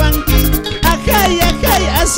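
Loud live band music from an Andean harp-and-keyboard group. A gliding melody runs over a steady bass and a fast, even beat.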